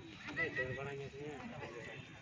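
Voices of people on the sideline of a football match: chatter, with one man calling out in a drawn-out shout about half a second in.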